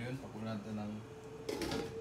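A metal-rimmed lid is set down on a stainless steel wok with a clatter about one and a half seconds in, and the metal rings on with a steady tone. A man's voice murmurs briefly before it.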